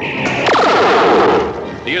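Sci-fi ray-gun sound effect of an alien spaceship firing its laser beams: a loud, rapid electronic pulsing with a quick falling sweep about half a second in, fading away after about a second and a half.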